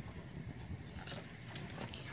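A few light metallic clicks of small brass lock pins being handled and set down on a work mat, a cluster about a second in and more near the end.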